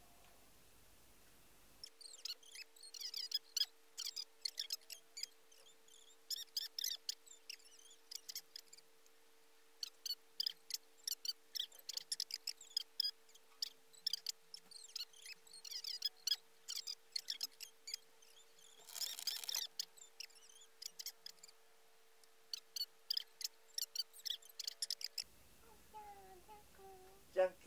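Fast-forwarded audio: rapid high-pitched squeaky chirps in quick clusters over a faint steady tone, with a brief hiss about three-quarters of the way through.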